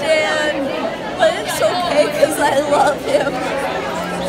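Voices talking over one another: a woman's voice, high and excited at first, with the chatter of other people around her in a busy shop.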